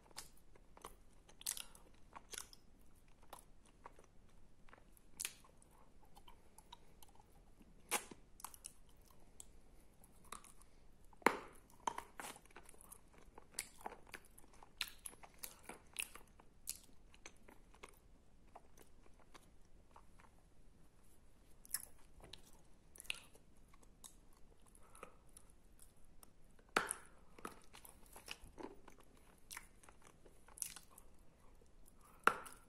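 Close-miked, sticky chewing and mouth sounds of someone eating wet edible clay paste (Tavrida clay), with irregular sharp clicks throughout and a few louder ones.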